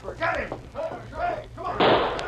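A radio-drama gunshot sound effect: a loud, sudden bang near the end, after some brief shouted voices of the actors.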